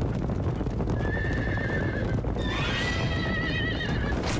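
Several racehorses galloping on turf, their hooves a dense steady drumming, with two wavering high whinnies: a short one about a second in and a longer one from midway to the end.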